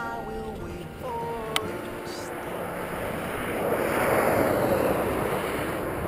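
Kawasaki KLR650 single-cylinder motorcycle engine running as the bike moves off, its tone dropping in pitch after about a second. A rushing noise then builds from about three seconds in, the wind on a camera mounted on the moving bike.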